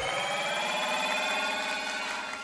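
A sustained, bright chord of many steady ringing tones that cuts in suddenly, holds for about a second and a half, then begins to fade: a musical sting played as the stage curtains open.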